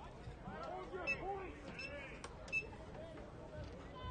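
Faint voices and crowd chatter at a football field, with a few short sharp clicks in the middle.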